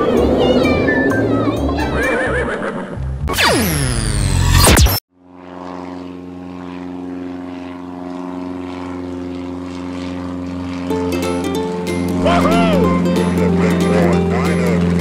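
Cartoon background music with a horse whinnying, ending in a falling whoosh that cuts off sharply about five seconds in. After a brief silence a steady propeller-plane engine drone builds, with chirpy sounds over it near the end.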